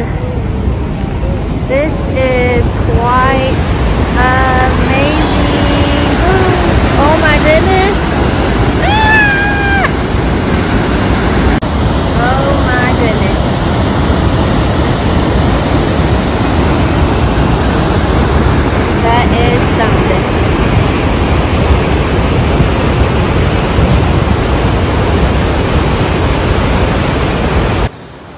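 Steady roar of the Lower Falls of the Yellowstone River, a big waterfall heard close up, with people's voices over it in the first half. The roar cuts off suddenly at the end.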